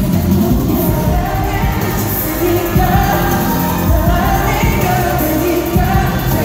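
Live pop music played loud through a concert PA: male vocals over a heavy bass beat.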